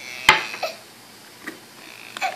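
A hand knocking on a plastic LED light panel: one sharp knock about a quarter second in, then a faint tap about halfway through.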